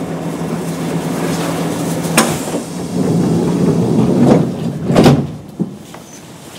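Kintetsu 8800 series train's sliding passenger doors closing at the station, with a sharp click about two seconds in and the loudest thump of the doors shutting about five seconds in, over a steady low hum. The sound turns quieter once the doors are shut.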